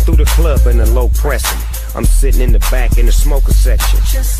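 Hip-hop track playing, with a rapped vocal over a beat with heavy bass.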